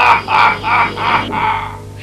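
Cartoon villain's cackling laugh: a row of about five harsh, pitched 'ha' bursts roughly a third of a second apart, dying away near the end.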